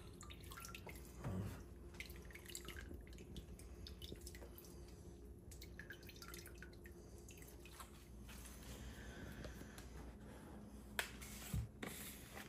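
Faint dripping and trickling of whey squeezed by hand from a cloth-wrapped ball of fresh cheese curds into a pot of whey.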